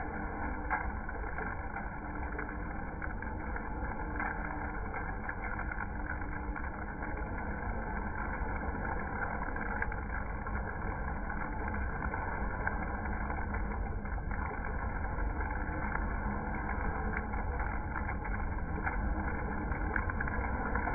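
Freshly dark-roasted coffee beans tumbling out of an Aillio Bullet R1 drum roaster into its cooling tray: a steady rattle of beans over the roaster's running whir, with light clicks throughout.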